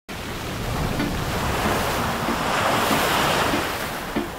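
Ocean surf washing onto a sandy beach, a wave rushing in that swells to its loudest about three seconds in and then eases a little.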